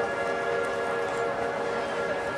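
A concert band of brass and woodwinds playing sustained, held chords whose notes shift every fraction of a second.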